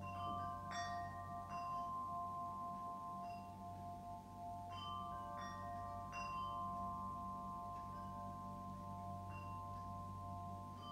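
Slow meditation music of struck, ringing bell tones, about six strikes at uneven intervals, each ringing on and overlapping the others over a steady low drone.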